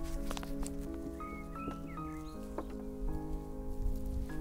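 Background music of held, slowly changing notes, with a few soft clicks and knocks from hands setting plants into a compost-filled hanging basket.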